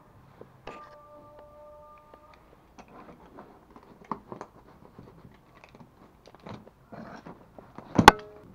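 Quiet scattered clicks and rustles of a tape-wrapped cardboard box and a utility knife being handled, with a faint steady tone for a second or two near the start. It ends in one sharp, loud knock close to the microphone.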